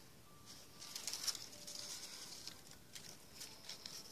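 Faint rustling and crinkling of paper cutouts being handled and moved, in short scratchy bursts that start about a second in.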